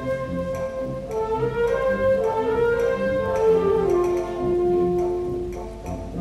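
Symphonic wind band playing a concert pasodoble: a sustained melody over a steady accompaniment, stepping down to a long held note about four seconds in.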